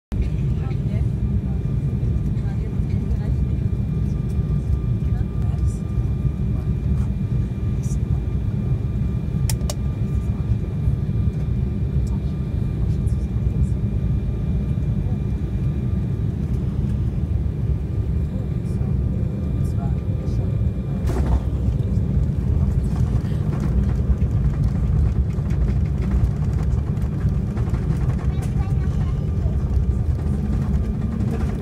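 Cabin noise of an Embraer 190 jet airliner landing and rolling out on the runway: a steady, loud low rumble of its twin GE CF34 engines and airflow, with a thin engine whine that fades out about halfway through. A single clunk sounds about two-thirds of the way in.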